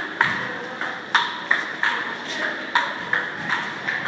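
Table tennis rally: a celluloid ball clicking sharply off the table and the rubber-faced bats, about two hits a second in an uneven back-and-forth rhythm.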